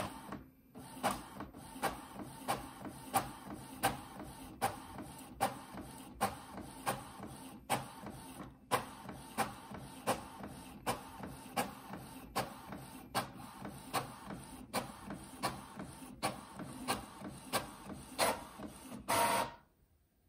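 Epson EcoTank ET-3850 inkjet printer printing a color copy: a steady mechanical running sound with a sharper stroke about every three-quarters of a second as the print head carriage passes over the page. A longer, louder stretch comes near the end, then it stops suddenly.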